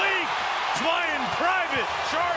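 Basketball arena crowd cheering a made fast-break basket, with a man's voice calling out several drawn-out exclamations over the noise.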